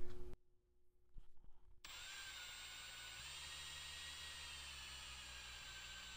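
Power drill spinning a reamer on a 1/2-inch drill extension shaft. It starts about two seconds in and runs steadily and faintly, its pitch shifting slightly about a second later.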